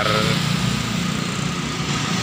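Motorcycle engine running steadily while riding, with a constant low rumble and road noise.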